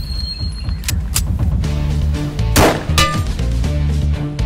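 A loud metallic clang about two and a half seconds in, with a couple of sharp hits about a second in, over dramatic background music.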